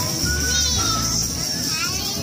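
Young children chattering and calling out as they play, over music with a steady low bass line.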